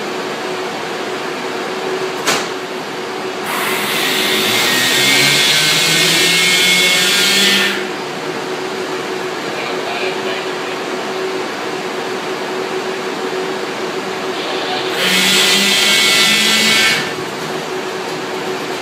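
Drive cabinet powering an impulse roller coaster's linear induction launch motors: a steady electrical hum with a constant tone, twice swelling into a louder, rising whine and hiss as the drive accelerates the train. The first swell lasts about four seconds and the second, near the end, about two.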